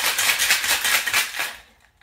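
Ice rattling inside a stainless steel cocktail shaker being shaken hard: a fast, even rattle that stops about one and a half seconds in.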